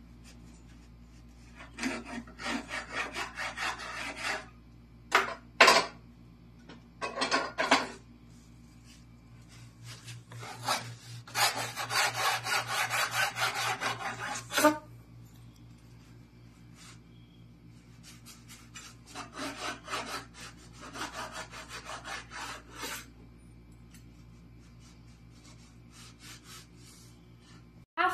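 A cleaver sawing back and forth through a crusty baguette on a wooden cutting board, in several bursts of quick scraping strokes, the longest and loudest near the middle. A couple of short sharp knocks come early on between the bursts.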